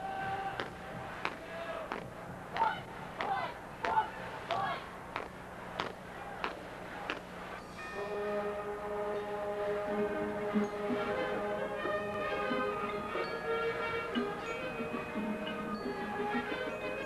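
Marching band music. For the first seven seconds or so, single bell-like notes from the mallet percussion are struck one at a time and ring on. About eight seconds in, the band comes in with soft, sustained held chords.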